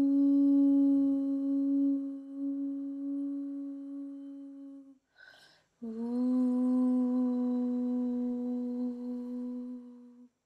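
A woman humming two long, steady notes, the second a little lower than the first, with a short breath between them about five seconds in; each note slowly fades.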